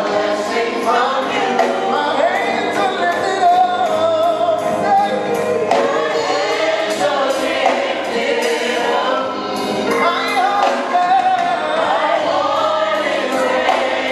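Gospel choir singing live into microphones, several voices together, over a steady beat of percussive hits.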